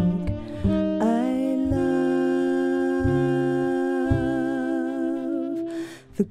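A woman singing long, held notes with vibrato over a plucked upright double bass, her line gliding upward about a second in; the music drops away briefly near the end.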